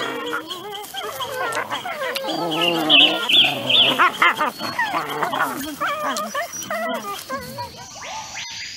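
Wolf pups whining and squealing as they nurse at their mother, a continuous run of overlapping calls with the highest squeals about three seconds in.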